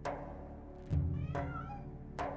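A kitten mewing once, about a second and a half in, over background music with a deep drum hit about a second in.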